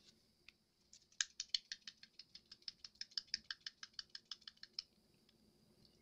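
A quick, even run of light clicks, about eight a second, starting about a second in and stopping just under four seconds later.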